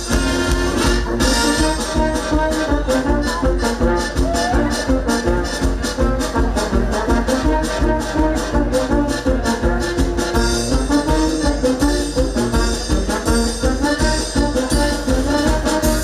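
Live brass band with tuba and trumpets playing a lively dance tune with a steady beat.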